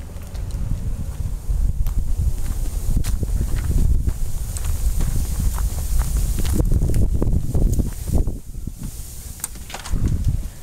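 Wind noise on the microphone, with footsteps on a concrete walk and a few sharp knocks.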